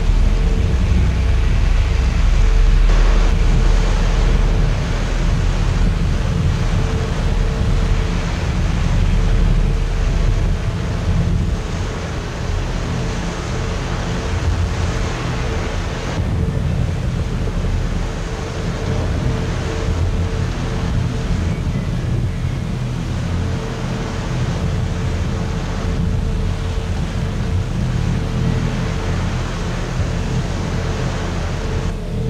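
Experimental ensemble drone music: a dense, steady low rumble with one held tone in the middle register and a hiss above it. It eases slightly in level a little before halfway, and the hiss thins soon after.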